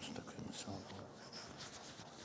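Soft rustling and light clicks of book pages and paper being handled close to a desk microphone.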